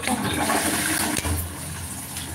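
A rush of running water that starts suddenly, stays loud for about a second and a half, then eases.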